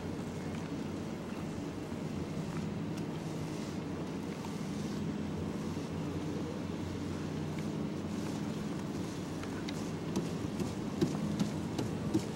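A steady low rumble with wind noise on the microphone, and a few faint clicks near the end.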